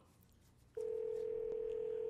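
Telephone ringback tone over a phone's speaker: near silence, then about three-quarters of a second in one steady ring tone starts and holds. It is the sound of an outgoing call ringing, not yet answered.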